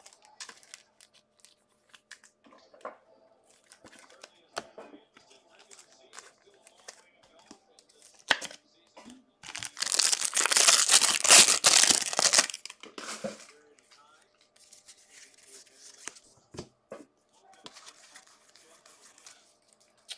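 Foil trading-card pack wrapper being torn open: a loud crinkly tear lasting about three seconds near the middle, with quieter rustles and clicks of cards and wrappers being handled before and after.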